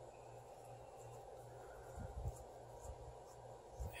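Quiet room tone: a faint steady low hum and hiss, with a soft low thump or two about two seconds in.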